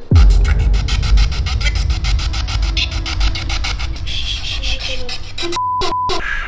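Handheld spirit box sweeping through radio stations, giving choppy bursts of static and radio fragments about ten a second over a deep bass drone. A short steady beep sounds just before the end.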